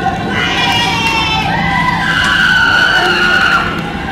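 Tyres of an armoured police vehicle squealing as it swings round at speed, loudest in the second half.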